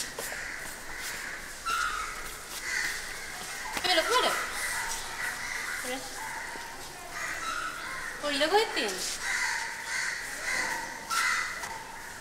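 Crows cawing repeatedly, with calls coming every second or two, and a couple of short spoken phrases in between.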